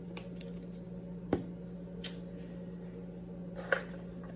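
A few sharp clicks and taps from plastic containers and utensils being handled during powder scooping: one about a third of the way in, a smaller one at the halfway point and another near the end. A steady low hum runs underneath.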